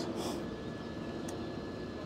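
Faint, steady hum of distant engine noise in open air, with no sudden sounds standing out.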